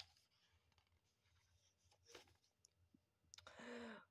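Near silence with faint paper handling as a picture book's page is turned: a few light clicks and a slightly louder soft rustle near the end.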